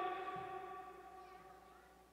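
A man's amplified voice ringing on after his last word through the public-address loudspeakers: a few steady tones that fade away over about two seconds.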